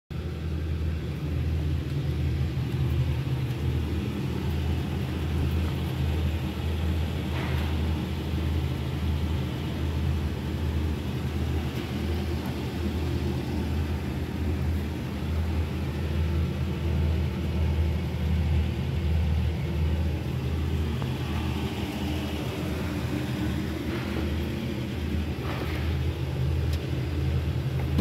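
Diesel engine of a Hyster Fortis 3.0 forklift idling, a steady low rumble with a few faint handling noises over it.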